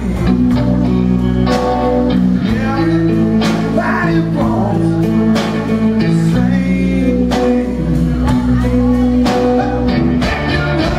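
Live blues-rock band playing: electric guitar, electric bass and drum kit, with held guitar notes and chords over a steady drum beat.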